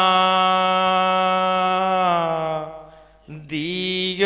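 A male voice holds one long, steady note of a devotional folk song, then fades out about three seconds in. A new sung phrase starts near the end, sliding up into its pitch.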